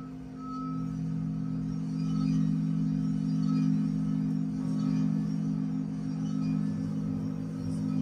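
Experimental music for piano and Pinuccio Sciola's sound stones: a sustained low drone of several close tones that swells and ebbs, with short high ringing tones recurring every second or so.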